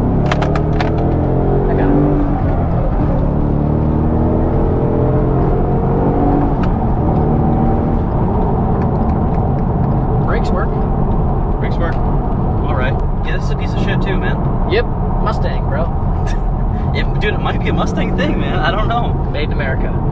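Ford Mustang GT's 5.0 V8 accelerating hard, heard from inside the cabin: the engine note climbs in pitch through about three gears in the first eight seconds. It then settles to a steady drone under road noise.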